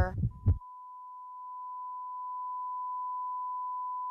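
Heart-monitor flatline sound effect: one last heartbeat thump about half a second in, then a single continuous beep tone that slowly grows a little louder, the sign that the heart has stopped.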